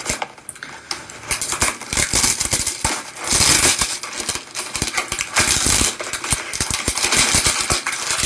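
Skincare product packaging being opened by hand: rustling and crackling with many quick clicks and taps, loudest in two stretches about three and five seconds in.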